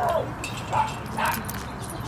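Faint, scattered short barks and yips of several dogs, with distant voices in the background.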